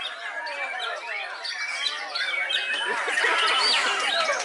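Many white-rumped shamas (murai batu) singing at once: a dense, unbroken tangle of fast, overlapping whistles and chirps.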